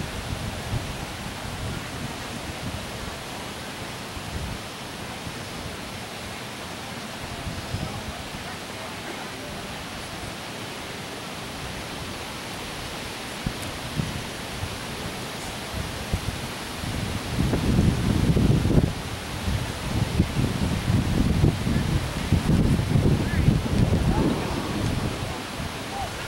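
Wind blowing across the camera microphone: a steady hiss, with heavy, irregular low buffeting gusts through the last several seconds.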